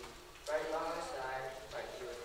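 A person's voice reading aloud: one phrase starting about half a second in and running for about a second and a half.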